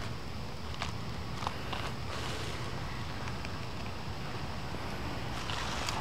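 Steady outdoor background noise in woodland, with a few faint clicks.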